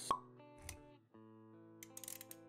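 Intro-animation music with held tones, punctuated by a sharp pop just after the start and a soft low thud shortly after. The music drops out briefly about a second in, then resumes.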